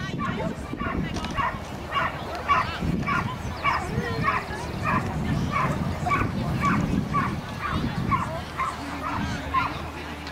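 Border collie barking in short, high yips at a steady pace of about two a second, kept up throughout as it works an agility course.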